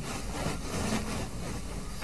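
Marker pen writing on a whiteboard: a steady rubbing of the tip over the board as letters and a fraction line are drawn.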